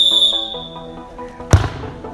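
Background music, with one sharp thud about one and a half seconds in: a football being struck by a kick.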